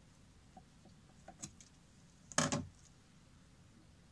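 A chocolate-glazed Baumkuchen is twisted on a metal rotisserie spit by gloved hands: a few faint clicks, then a short crackle a little past halfway from the hardened chocolate coating as the cake is worked loose from the spit.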